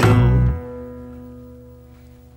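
The song's final chord: banjo, guitar and drum struck together, loud for about half a second, then the plucked strings ring on and die away.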